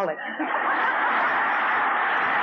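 A large audience laughing and applauding at a joke. The sound swells in within the first half-second and then holds steady.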